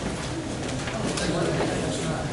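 Low, indistinct talking in a meeting room, with no clear words.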